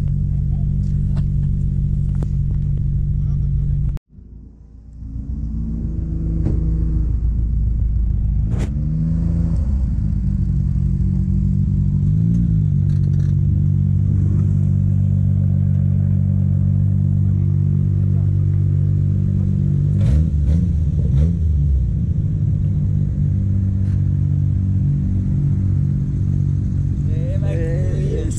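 Car engine idling with a deep, steady rumble, rising briefly in pitch a couple of times around ten and twelve seconds in. The sound cuts out abruptly about four seconds in and fades back up over the next two seconds.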